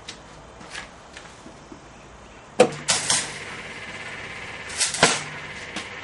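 Electrical fault noise from CFL lamps driven at about 2 kV by microwave oven transformers. About two and a half seconds in there is a loud snap as the circuit comes live, then a steady hum with a high whine. Near the end a second loud crackling pop comes from a capacitor in a lamp's electronics bursting under the overvoltage.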